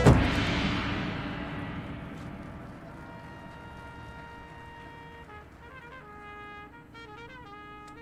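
Drum and bugle corps ends a loud full-band phrase on a single big hit that rings out and fades over about three seconds, then the brass hold soft sustained chords that change twice.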